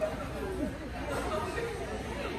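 Indistinct chatter of voices, with no clear words.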